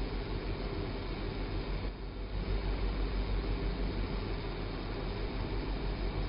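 Steady room tone: a low hum with an even hiss and no distinct events.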